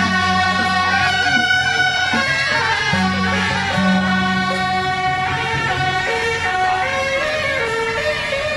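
Procession band of brass horns playing a slow melody in long held notes, over a steady low bass note that cuts out and returns.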